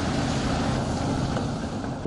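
Steady industrial noise at a pig-iron casting line carrying molten iron: an even rushing sound with no distinct tones, its higher part easing after about a second.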